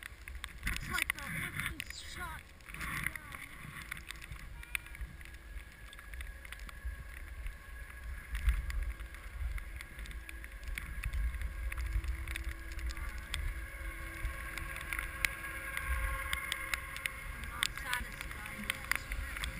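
Skis sliding over snow, heard through a GoPro carried on the run: a steady low rumbling hiss broken by frequent small clicks.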